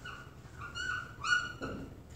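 Dry-erase marker squeaking on a whiteboard while a word is written: a run of five or so short, high squeaks, one per pen stroke.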